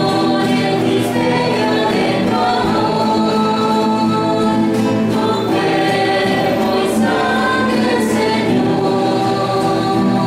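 A choir singing a Christian hymn, with several voices holding sustained notes at a steady level.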